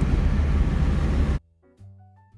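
Loud rush of wind from an open window of a moving car, buffeting the microphone, with road noise under it. It cuts off abruptly about one and a half seconds in, leaving soft keyboard music.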